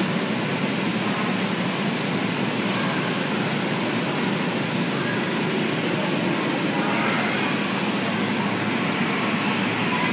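Steady noise of the electric blower fan keeping an inflatable obstacle course inflated, with faint children's voices under it.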